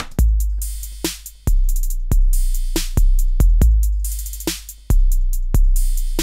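Roland TR-808 drum-machine beat playing from a step sequencer: long 808 kick notes that step between two pitches (G0 and A sharp one), with hi-hat ticks, a quick hi-hat roll around four seconds in, and other drum hits in a slow hip-hop/grime pattern.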